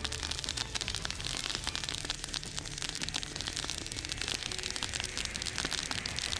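Dry grass and brush burning in a wildfire, crackling with a dense, continuous run of small snaps and pops over a low rumble.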